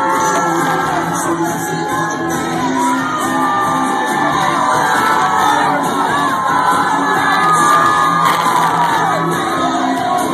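Loud music playing, with a crowd shouting and whooping over it throughout.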